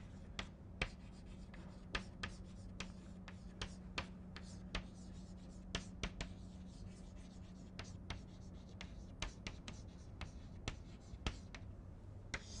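Chalk writing on a blackboard: a quick irregular series of sharp taps and short scratchy strokes as letters are formed, over a faint steady low hum.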